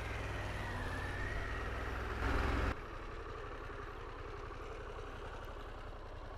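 Harley-Davidson Pan America's V-twin engine running as the motorcycle is ridden, with the sound rising briefly about two seconds in and then dropping abruptly to a quieter, steady engine hum.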